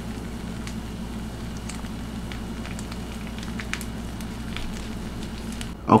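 Pot of instant noodles simmering on the stove: a steady low hum with scattered light crackles.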